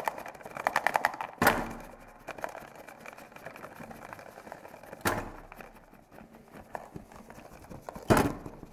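Rapid mechanical clicking and rattling, then two heavier clunks, each with a short ringing decay, about one and a half and five seconds in, with scattered softer ticks between.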